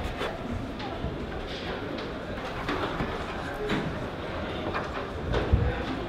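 Faint scattered taps and scuffs of a climber's hands and rubber-soled shoes on plastic holds of an indoor bouldering wall, over low background chatter of voices.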